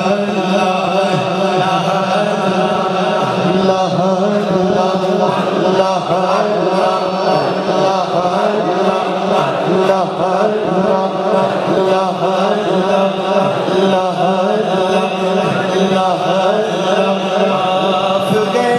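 Unaccompanied devotional chanting by male voices: a winding melodic line sung over a steady, held low drone, continuous and unbroken.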